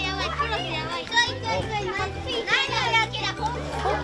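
Several children talking and calling out over each other, over background music with a low bass line.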